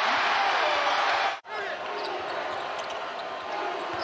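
Home basketball crowd cheering loudly for a made three-pointer. The roar cuts off abruptly about a second and a half in, giving way to quieter arena crowd noise with a basketball being dribbled on the hardwood court.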